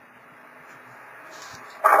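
Radio receiver hiss from the transceiver's speaker in the gap between transmissions, a narrow-band rushing noise that slowly gets louder; a voice over the radio says "uh" just before the end.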